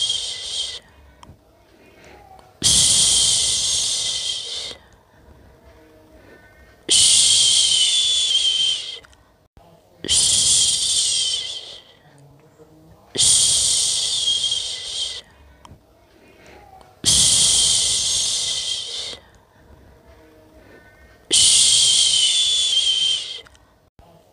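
A person shushing a baby to sleep: long 'shhh' sounds of about two seconds each, repeated roughly every four seconds. One ends about a second in and six more follow.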